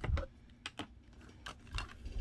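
Small plastic toiletry items knocking and clicking against each other as a hand rummages inside a leather handbag: a few light, irregular taps.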